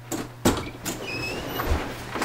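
A door being opened: a click, a louder knock about half a second in, two short high squeaks, and a low thud near the end.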